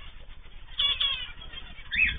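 Caged aviary birds calling: a quick run of short, sharp calls about a second in and another sharp call near the end.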